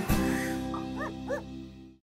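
Music ending on a held chord that fades out. Three short, high dog yips sound over it in the second half.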